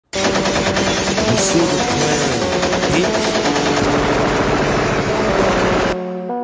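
Rapid, sustained automatic-gunfire sound effect laid over the opening of a hip-hop track, with held synth notes underneath; the gunfire stops abruptly at the very end, leaving the keyboard melody.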